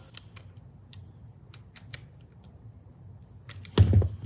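Faint scattered metal clicks of a screwdriver tightening the blade screws on a Babyliss clipper, then a single louder knock near the end.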